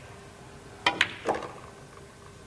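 Pool cue tip striking the cue ball, followed a split second later by a sharp click of the cue ball hitting the object ball, then a duller knock as the object ball is potted.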